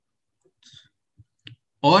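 A pause in a man's speech, holding a few faint, short mouth clicks and a soft breath, before he starts speaking again just before the end.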